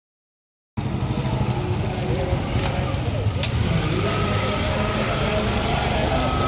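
Crowd noise: many indistinct voices over a heavy low rumble, starting abruptly just under a second in.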